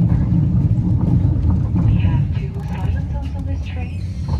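Low, steady rumble of a moving passenger train heard from inside the carriage, with faint voices underneath.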